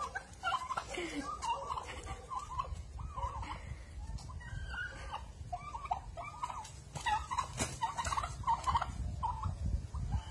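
Turkeys calling, many short quick calls overlapping one another, over a low rumble.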